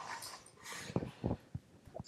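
A soft breath of air and a few faint mouth clicks in a short pause between spoken sentences.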